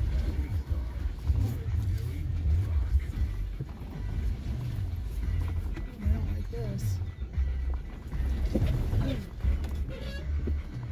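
Low, steady rumble of a Jeep Gladiator crawling slowly down a rocky trail, heard from inside the cab, with faint voices now and then.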